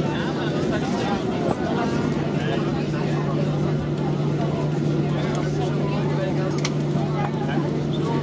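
Inside the cabin of a Boeing 737-800 taxiing at idle: its CFM56-7 engines and airflow make a steady drone with a constant low hum. Passengers chatter faintly in the background.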